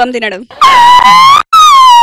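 Two loud, high horn-like honks from a sound effect: the first holds and rises slightly, and after a short break the second slides down in pitch.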